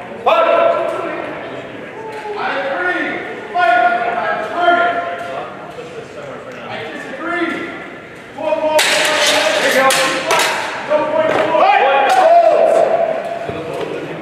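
Voices in a large hall, and about nine seconds in a quick run of sharp metallic clashes as steel longswords strike each other in a fencing exchange.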